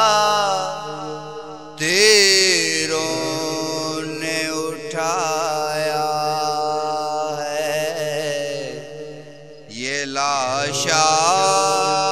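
Male voice chanting an Urdu noha lament in long, wavering held notes without words, over a steady low drone; new phrases begin about two seconds in and again near ten seconds after short dips.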